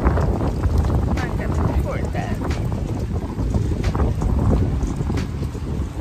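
Wind buffeting a phone microphone outdoors: a loud, steady low rumble, with faint voices under it.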